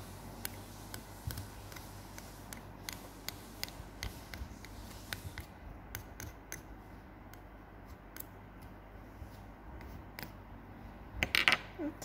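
Irregular small clicks and taps of a handheld grooming tool picking at the fur around a plush toy's hard plastic eye.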